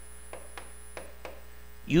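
Steady electrical mains hum, with faint light ticks, about three or four a second, of a pen tapping the screen of an interactive whiteboard while handwriting notes.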